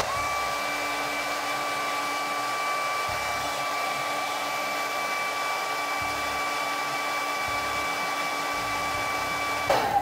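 White Conair hair dryer running steadily, heating the action figures' plastic heads to soften them: a constant rush of air with a thin high whine in it. It cuts off just before the end.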